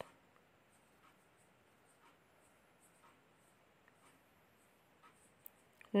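Faint scratching of a marker pen writing on paper, a few soft strokes about a second apart over quiet room tone, with a small click near the end.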